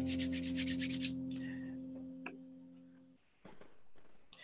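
An electric piano's held note fading away over about three seconds. During the first second there is a fast scratchy rubbing, about ten strokes a second, and there is a single click a little after two seconds.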